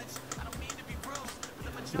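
Faint background music with a wavering singing voice, over scattered light clicks of a computer keyboard and mouse.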